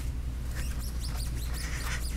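Microfiber towel rubbing over a waxed motorcycle fork, giving many faint high squeaks over a steady low hum.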